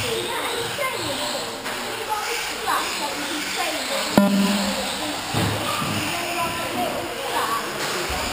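Several 1/18-scale brushless RC cars' electric motors whining, their pitch repeatedly rising and falling as they accelerate and slow around the track, with a sharp click about four seconds in. Voices carry in the hall.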